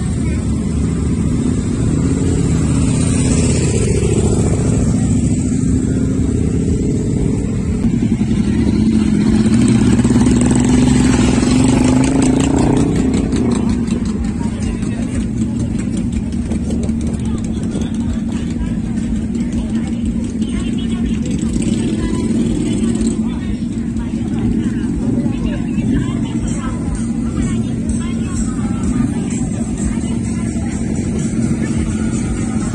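Motorcycle engines running, rising in a revving swell about a third of the way in and then settling to a steady rumble, with voices in the background.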